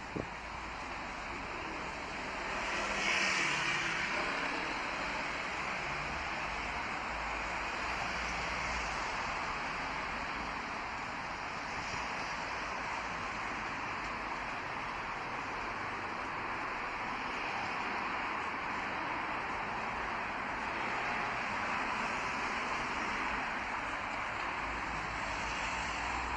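Street traffic: a steady rush of cars passing on the road alongside, loudest as one vehicle goes by about three seconds in.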